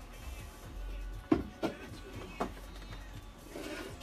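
Three sharp knocks and bumps of equipment being handled near the microphone, the loudest a little over a second in, over a low rumble.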